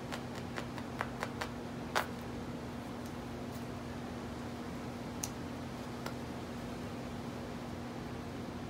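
Felting needle being worked into wool on a felting pad: a run of light, quick clicks and taps in the first two seconds, then two more a few seconds later. A steady low hum runs underneath.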